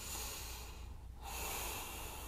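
A woman's soft breathing close to the microphone: two long breaths, a pause of about half a second between them.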